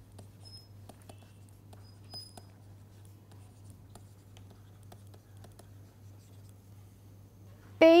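Faint taps and scratches of a stylus writing on a tablet screen, scattered irregularly, over a steady low hum. A woman's voice starts right at the end.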